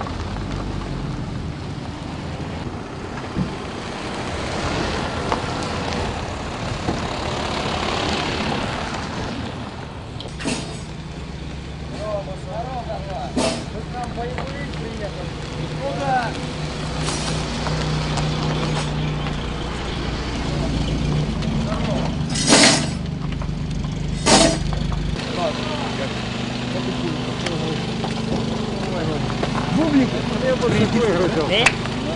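Truck engines running steadily under indistinct voices, with several sharp bangs; the two loudest come close together, about two seconds apart, late on.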